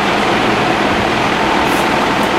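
Steady rushing background noise in a small room, even and unbroken, with no distinct sounds standing out.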